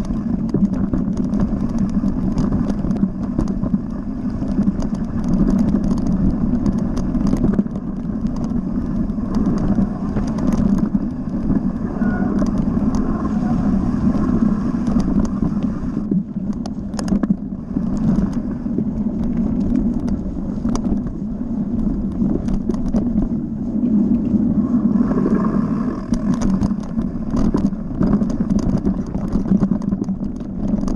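Mountain bike riding fast down a rough gravel and dirt trail, heard from a camera mounted on the bike: a steady low rumble of tyres and wind, with frequent clicks and rattles as the bike goes over stones and bumps.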